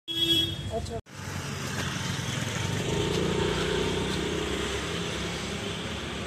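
Street traffic: a motor vehicle's engine and tyre noise swells about three seconds in and then slowly fades, after a brief sound that cuts off abruptly about a second in.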